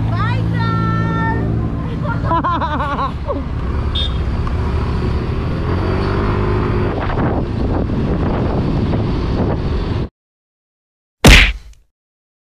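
Motor scooter engine running with wind and passing traffic while riding on a city road. The sound cuts off suddenly about ten seconds in, and about a second later there is one short, loud swoosh-like burst.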